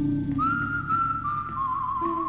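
Spaghetti-Western film music. A high, whistle-like melody line slides up about half a second in, then holds long notes with a wide vibrato over a low sustained note.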